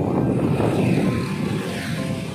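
Motor vehicle engine and road noise, a loud rumble that is strongest for about a second and a half and then eases.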